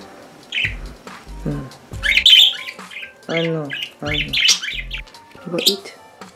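Pet budgerigar calling in several short, high bursts.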